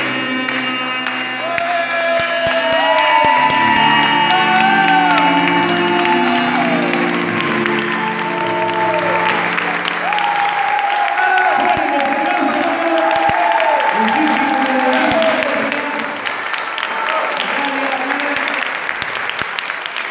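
Keyboard and alto saxophone duet playing its closing bars, the keyboard's held chords fading out about ten seconds in. Audience applause follows, with clapping and voices to the end.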